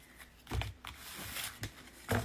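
A new deck of tarot cards being shuffled by hand: quiet rustling and sliding of card stock with small clicks, after a soft thump about half a second in.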